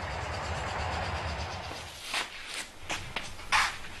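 Combine harvesters running in a field: a steady machinery hum with a hiss over it. In the second half it fades, and a few short knocks and scuffs come through.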